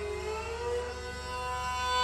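Bowed string instrument playing a slow melody that slides down and then up into a held note, over a steady drone.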